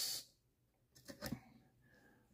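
A few faint, light clicks and taps about a second in, as a small aluminium C-block is set into place on an RC buggy chassis.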